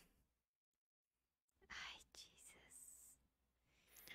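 Near silence: room tone, with a few faint soft noises about two seconds in.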